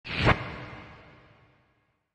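Title-card sound effect: a quick whoosh that swells into a hit about a third of a second in, then a reverberant tail fading out over about a second and a half.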